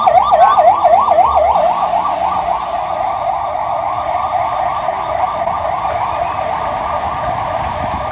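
Ambulance siren in fast yelp mode, its pitch sweeping up and down about five times a second. After about two seconds the sweeps blur together and the siren gets somewhat quieter.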